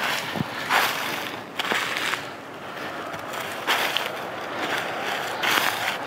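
Footsteps crunching through snow and frosted dry grass, several uneven steps.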